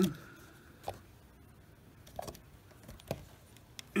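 Plastic brake fluid reservoir cap being pressed down onto the reservoir: three soft clicks or taps about a second apart. The cap is push-on, not threaded, and seals as it seats.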